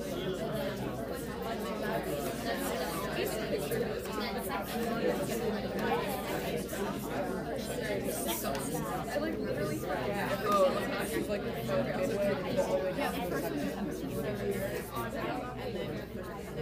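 Indistinct voices in a classroom: several people talking at once, with no single voice coming through clearly.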